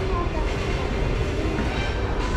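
Busy indoor public-space ambience: a steady low rumble with distant voices of passers-by.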